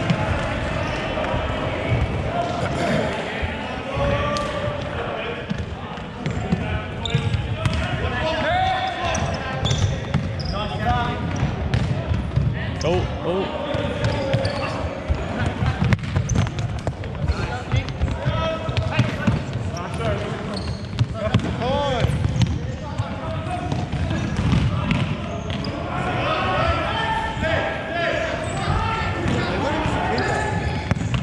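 Indoor soccer game on a hardwood court: the ball being kicked and bouncing off the wooden floor again and again, with players' running feet and their shouts and calls, all echoing in a large hall.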